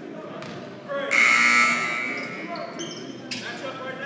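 Gym scoreboard horn sounding during a stoppage, starting about a second in, loudest for the first half second, then carrying on more quietly until it cuts off just past three seconds.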